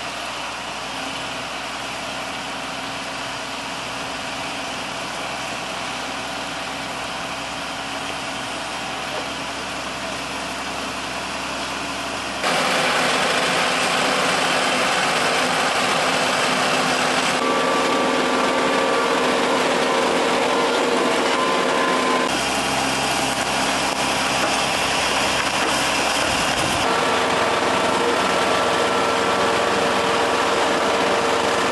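Diesel engines of heavy road-building machinery, a single-drum road roller among them, running steadily. The sound jumps abruptly in tone several times and gets louder about twelve seconds in.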